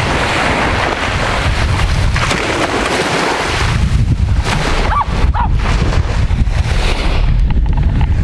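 Wind buffeting the microphone with small waves washing on a sandy shore, and a dog faintly barking at the sea in the background about five seconds in.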